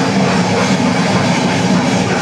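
Grindcore band playing live at full volume: a dense, unbroken wall of distorted guitar and drums.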